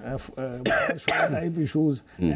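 A man's talk broken by a short throat-clearing cough about halfway through.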